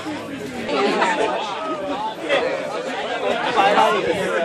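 Several people talking, indistinct chatter with no clear single voice.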